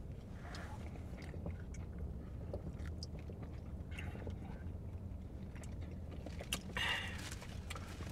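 People sipping hot coffee from paper cups, with small scattered mouth sounds and faint clicks over a low steady hum.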